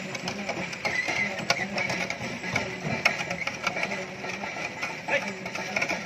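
Indistinct background voices mixed with irregular clicking and clatter.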